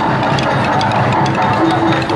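Loud music with drum percussion.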